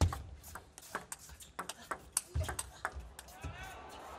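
Table tennis ball clicking off the table and the players' rackets in a rally, a sharp irregular series of ticks several times a second, with a few low thuds among them.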